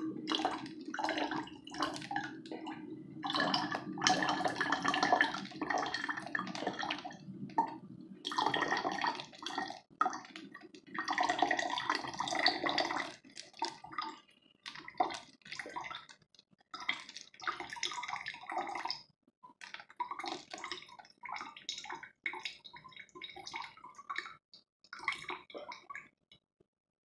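Water poured from a can in a thin stream into a plastic water bottle, splashing and trickling steadily. After about 13 seconds the stream breaks up into intermittent trickles and drips, and it stops near the end.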